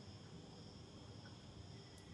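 Near silence with a faint, steady high-pitched drone in the background.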